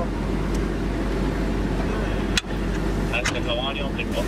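Armored vehicle's engine idling with a steady low rumble, heard from inside the cabin. A single sharp knock sounds a little past halfway, and brief voices come near the end.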